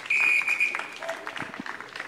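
A single steady high-pitched beep lasting well under a second, starting right at the beginning. A fainter, lower tone follows about a second in, over faint outdoor background noise.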